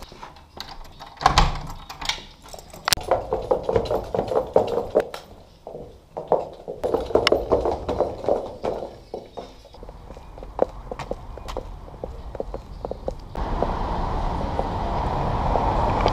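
A key turning in a door lock and the lever-handle latch clicking, then irregular footsteps and knocks as a door opens and closes. About 13 s in, a steady background din rises and carries on.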